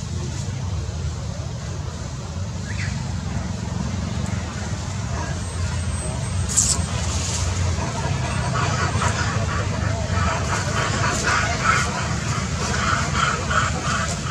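A steady low rumble, with people's voices talking in the background from about eight seconds in and a single sharp click a little before that.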